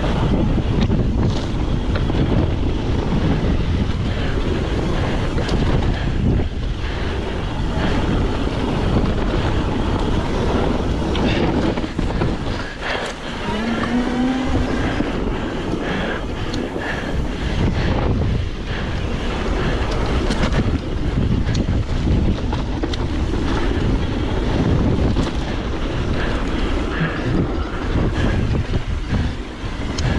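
Wind buffeting the microphone on a fast mountain-bike descent, over the rumble of knobby tyres on dry dirt singletrack. The bike's chain and frame rattle and clack over bumps all the way through.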